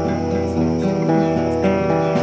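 Acoustic guitar music: chords picked and strummed, the notes changing every fraction of a second.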